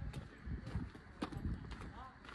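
Footsteps walking on a rough dirt and stone path, about two steps a second, with scattered sharp clicks.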